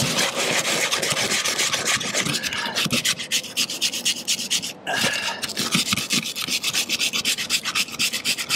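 Hand-held steel wire brush scrubbed in rapid back-and-forth strokes over a metal roof seam, scoring old silicone sealant so that new sealant will adhere. The strokes pause briefly about five seconds in, then carry on.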